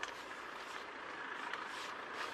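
Steady road-traffic noise, growing a little louder in the second half.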